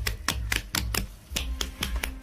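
Hands rapidly slapping the sides of a mould filled with wet cement, about six quick taps a second with a short break partway through, to settle the mix.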